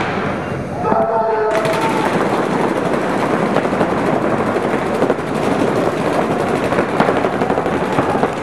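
A short steady tone sounds about a second in. From about a second and a half in, many paintball markers fire at once in a dense, rapid, unbroken volley.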